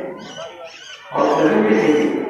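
A man's voice through a public-address loudspeaker, speaking in drawn-out phrases: a quieter pause in the first second, then a loud phrase starting just after a second in.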